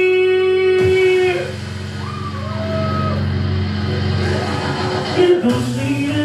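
Male singer holding one long sung note over a recorded rock backing track. The note cuts off about a second and a half in, the backing track plays on, and the voice comes back near the end.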